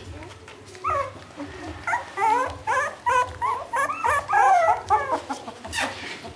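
A litter of 23-day-old beagle puppies whining and yelping, many short rising and falling cries overlapping from about a second in. A sharp knock near the end.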